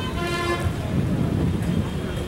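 A vehicle horn toots once for about half a second near the start, over a steady low rumble.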